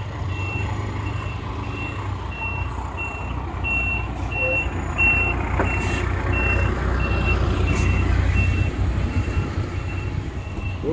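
A truck's reversing alarm beeping steadily, about twice a second, over a low engine rumble that grows louder about halfway through.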